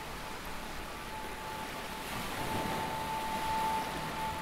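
Ambient meditation backing track: a soft, steady hiss with a single held high tone that comes in a little past halfway and sustains.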